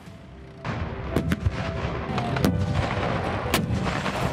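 Gunfire: a quick pair of sharp shots, then two more about a second apart, over a continuous low rumble of vehicle noise that starts about half a second in.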